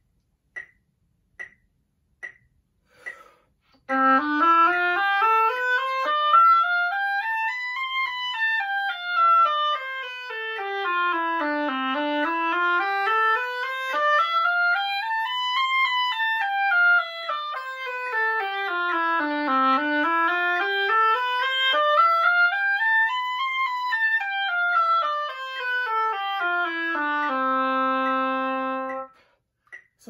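Oboe playing a C scale over two octaves in triplets, up and down three times through, ending on a held low C. A metronome ticks at about 72 beats a minute for the first few seconds before the playing starts.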